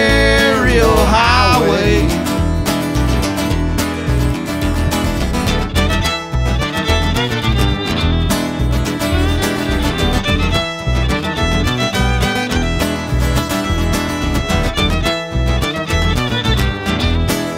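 Instrumental break in a live country-bluegrass song: a fiddle plays the lead over acoustic guitar, with sliding fiddle notes in the first couple of seconds.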